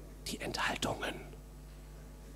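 A brief whispered remark near the microphone, about a second long, over a steady low hum.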